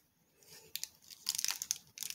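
Plastic Fans Toys Warthog (Masterpiece Powerglide) transforming robot figure being handled and its joints moved: after a brief quiet, a run of quick small clicks and scrapes that gets busier toward the end.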